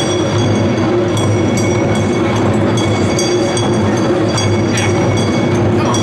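Ensemble of Japanese taiko drums on wheeled stands struck by several drummers at once, making a dense, unbroken drumming with no pauses, with a steady metallic ringing above it.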